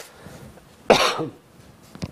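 A person coughing once, a short harsh burst about a second in.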